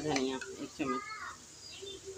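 A person's voice for about the first second, then quieter room sound.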